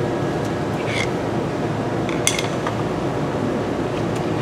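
A few light metal clinks, about a second in and twice a little after two seconds, as a screwdriver turns the brake hub and the grease gun's coupler is brought back to the hub's grease fitting. A steady background hiss runs under them.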